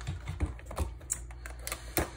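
Light, irregular clicks and taps of hands handling foil trading-card packs and a small cardboard box on a desk.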